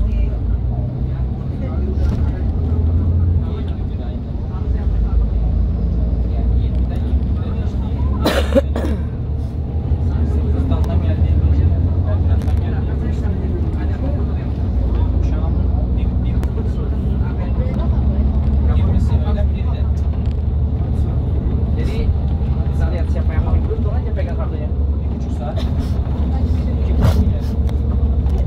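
Steady low rumble of a moving bus heard from inside the cabin, with indistinct passenger voices and a sharp knock about eight seconds in.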